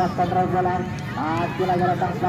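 A voice talking almost without pause, over a steady low hum.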